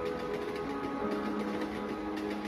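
Ambient background score of sustained, held notes, the chord shifting about half a second in and again after a second.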